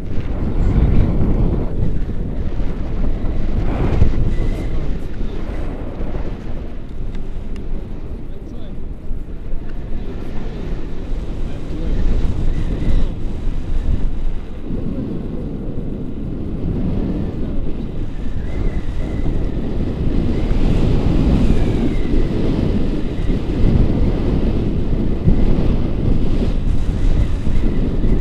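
Airflow of paraglider flight buffeting the camera's microphone: a loud, rumbling wind noise that swells and eases in gusts.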